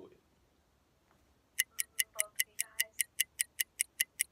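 Monkey app's countdown timer ticking as a video call runs out its last seconds: a fast, even run of sharp clicks, about five a second, starting about a second and a half in.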